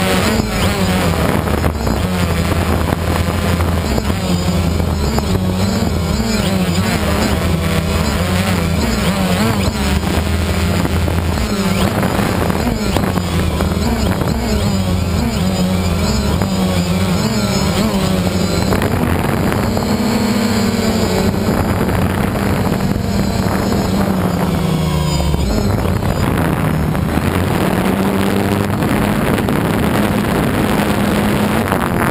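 DJI Phantom quadcopter's electric motors and propellers running in flight, heard close up from the camera on board: a loud, steady buzz whose pitch wavers up and down as the motor speeds change.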